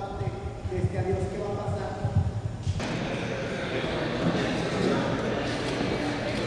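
Indistinct voices in a large, echoing room, with a few low thuds in the first couple of seconds. A little under three seconds in, the sound changes abruptly to a busier, brighter murmur of many people talking at once.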